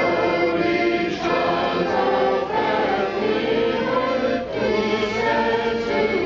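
A school children's choir singing together in chorus, holding long sung notes.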